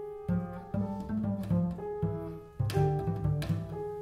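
Double bass and piano playing a classical duo sonata together: a run of short, separate low notes on the bass under higher piano notes.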